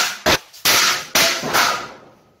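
A sledgehammer blow knocks over a steel hand-sanitizer dispenser stand, followed by loud metal crashing and clattering as it falls: four hard crashes in under two seconds, each dying away quickly.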